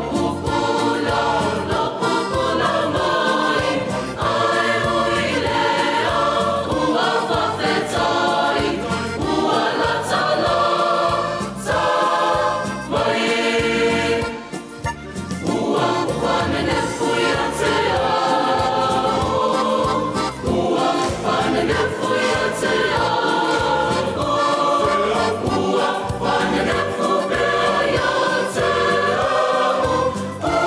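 A mixed Samoan choir of women's and men's voices singing a worship song in harmony; the sound dips briefly about halfway through before the full choir comes back in.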